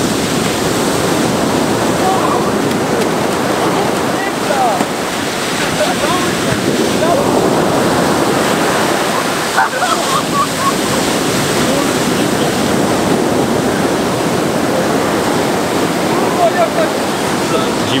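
Heavy surf breaking on a sandy beach: a steady, loud rush of waves and foam. A few short shouts from men wading into the waves cut through it now and then.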